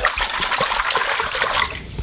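Coca-Cola in a bathtub being sloshed and swished around, a continuous watery rush that eases off near the end; the cola has gone flat.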